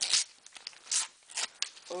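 A Panini sticker packet being torn open by hand: a few short, noisy rips, about a second apart.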